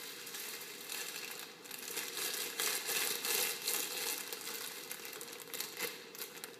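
Plastic bag crinkling and rustling in quick crackles, growing louder toward the middle and easing off near the end.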